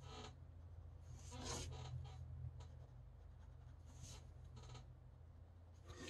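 Faint scratching of a fine-tip pen drawing on paper: a handful of short strokes spread through the seconds, over a low steady hum.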